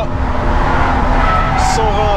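Subaru BRZ's flat-four boxer engine running at steady revs, heard from inside the cabin, with tyre noise as the car is slid through a small drift.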